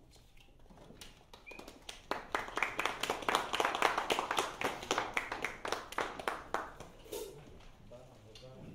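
Audience applauding: it starts about two seconds in, swells, then dies away near the end.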